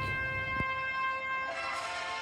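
Orchestral music with sustained brass and woodwind notes; a new chord enters about one and a half seconds in.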